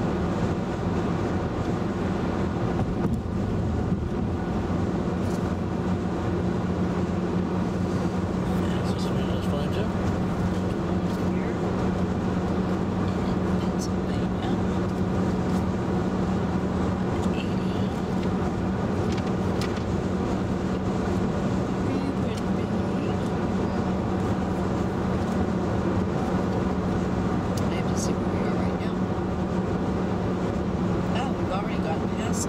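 Steady road and engine noise inside the cabin of a 2011 VW Tiguan cruising at highway speed: tyre noise on the pavement under a low, even hum from its 2.0-litre turbocharged four-cylinder.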